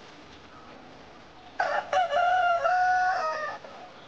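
A rooster crowing once, starting about one and a half seconds in: a single long call of about two seconds that steps in pitch and then cuts off.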